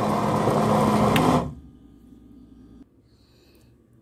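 Electric countertop blender running on a thick carrot-cake batter with a steady motor hum, then switched off about a second and a half in, after which it goes nearly quiet.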